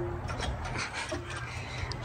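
Faint rubbing and scraping with small ticks as hands work parts around the turbo intake plumbing in a car's engine bay.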